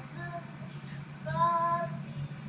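A child's voice singing, a short note and then a longer held note about halfway through, played through a TV speaker with a steady low hum beneath.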